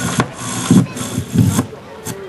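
A man's voice making two short wordless sounds, about half a second apart, with a sharp click near the start.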